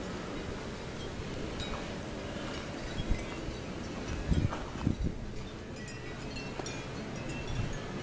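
Wind rumbling on the microphone, with scattered faint, high chiming tones ringing through it and a couple of soft low bumps about halfway.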